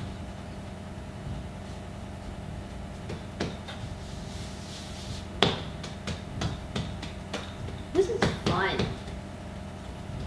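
Hands patting a risen ball of pretzel dough flat: a series of irregular soft slaps and thumps, the sharpest about five and a half seconds in and a cluster near the end, over a steady low hum.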